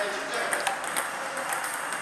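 Table tennis balls clicking off bats and tables, several quick, uneven ticks a second from more than one table at once.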